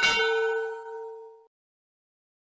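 Notification-bell sound effect: a sharp click, then a bell chime ringing with several tones together and fading away about a second and a half in.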